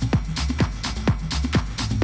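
Techno music played live on electronic gear, driven by a steady four-on-the-floor kick drum at about two beats a second.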